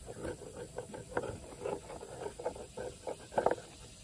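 A knife blade scraping and shaving bark off a forked wooden branch in quick, irregular strokes, with the loudest stroke near the end.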